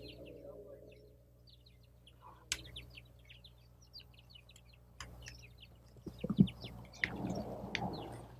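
Small birds chirping in quick series of short, high notes, with a couple of sharp knocks and a few louder thumps about six seconds in.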